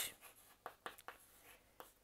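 Faint chalk writing on a chalkboard: a scatter of short taps and scrapes as a few characters are written.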